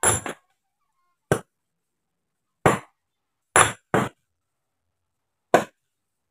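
Sledgehammers striking large stones to split them by hand. Seven sharp, ringing clinks of steel on rock at uneven intervals, two of them coming in quick pairs.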